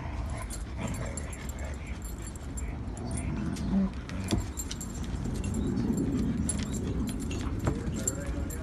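Huskies play-fighting: dog sounds from the scuffle with scattered short clicks and jingles from a chain collar.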